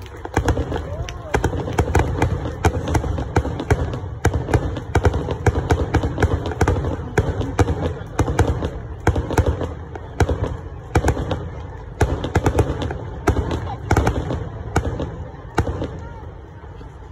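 Fireworks display: a rapid barrage of aerial shell bursts, two or three bangs a second with crackling between them, stopping shortly before the end.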